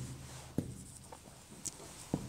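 Whiteboard marker writing on a whiteboard: a few faint, short strokes.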